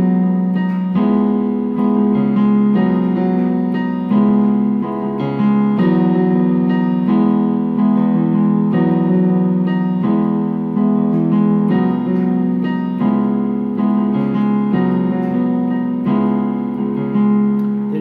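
Yamaha Portable Grand digital keyboard playing a slow chord progression of left-hand octaves under right-hand three-note chords, a new chord struck about every second and held.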